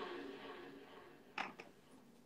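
Sound fading away toward near silence, with two brief faint clicks about a second and a half in.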